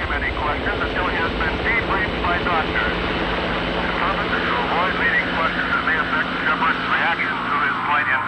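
Indistinct chatter of many voices over the steady drone of a helicopter engine.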